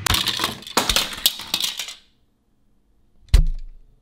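Keys and metal clips jangling and clinking on a wall key rack for about two seconds as they are handled. After a short silence comes a single sharp knock with a dull thump.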